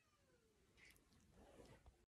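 Near silence: room tone, with a faint falling whine in the first half second and faint rustling later on.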